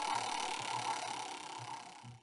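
Hissing sound effect of an on-screen random topic generator cycling to its next pick. It fades steadily and cuts off at the end.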